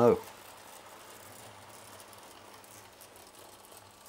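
00 gauge model locomotive running with a train of five bogie coaches, heard as a faint, steady rattle of wheels on the track while it climbs an incline under load.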